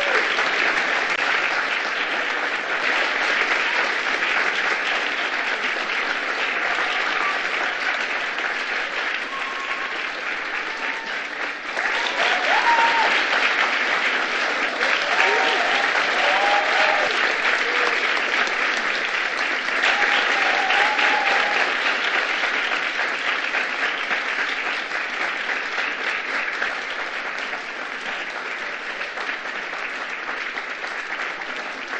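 Audience applauding steadily, growing louder about twelve seconds in, with a few faint voices calling out over it.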